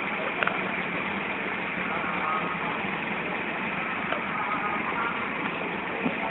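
Steady outdoor crowd noise with a murmur of voices under it, and a single sharp firework crack about half a second in, with fainter pops later.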